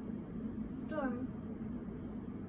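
A pause in the conversation: a steady low hum, with one short, faint voice sound about a second in.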